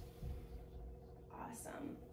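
A woman's soft whispered voice near the end, after a few low bumps at the start, over a faint steady hum.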